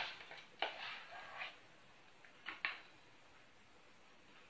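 Faint handling of a saucepan of thick polenta and a spoon: a scrape about half a second in, then two light knocks close together about two and a half seconds in.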